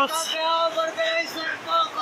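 A man's voice holding a long, drawn-out note, more sung than spoken, with a few short breaks.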